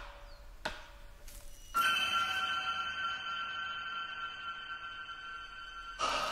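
Blade chopping into bamboo: three strokes about two-thirds of a second apart, each ringing briefly. Near two seconds in, a sustained high shimmering chord of music comes in and holds.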